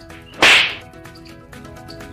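A single sharp slap about half a second in, over steady background music.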